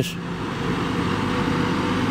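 Heavy farm machinery at a silage pile running with a steady, low engine drone: a tractor rolling the grass silage and a forage harvester, heard from a distance.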